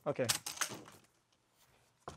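A metal latch on a hardshell guitar case clicks open as a man says "okay", then it goes almost quiet.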